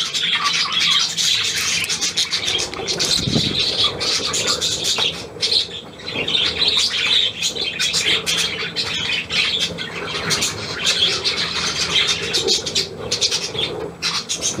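A flock of budgerigars chattering and warbling without pause, a dense mix of quick chirps and sharp calls.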